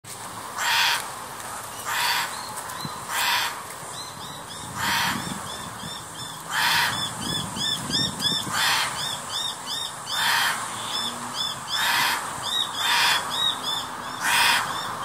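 A channel-billed cuckoo calling over and over with harsh, piercing screams, about nine of them, each roughly a second and a half apart. From about four seconds in, a smaller bird chirps rapidly between the calls.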